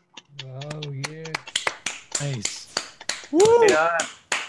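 Scattered applause from several participants on a video call, heard through the call's compressed audio, with voices calling out in appreciation, the loudest a long rising-and-falling exclamation near the end.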